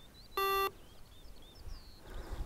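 Skydio 2 beacon giving a single short electronic beep, about a third of a second long, one of a string of repeated beeps. It is the beacon's alarm that it has lost its link with the drone.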